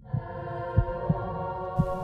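Dramatic soundtrack for a film-style intro: a sustained droning chord of several held tones, with a few low thumps underneath.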